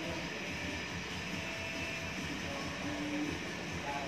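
Steady, even background noise of the room, with a few faint brief tones about three seconds in.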